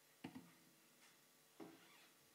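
Near silence broken by faint knocks as a guitar is set down against a stool: a quick double knock about a quarter second in and another just past halfway.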